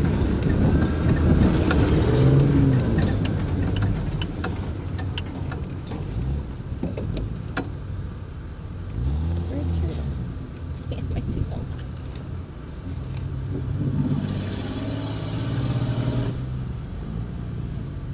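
Off-road truck's engine running and revving as it drives over a rough dirt track, with its pitch rising and falling several times and scattered knocks and rattles from the body bouncing.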